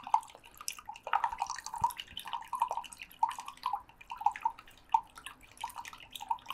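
A small amount of water being stirred in a cup with a small plastic implement, with quick, uneven swishes and light taps against the cup's sides, about three or four a second. It is a diluted chlorine test sample being mixed.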